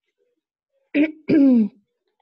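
A person's brief two-part vocal sound with a falling pitch, about a second in, after near silence.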